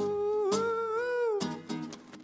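A man's voice holding one long wordless sung note that wavers in pitch and ends about one and a half seconds in, over strummed classical guitar chords that carry on alone after it.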